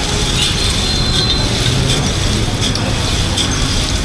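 Steady hum of traffic and street-market background, with a few light clinks of glass soda bottles knocking together in an ice bath as one is pulled out.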